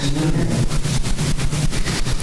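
Steady low hum with a fine even buzz, unchanging throughout.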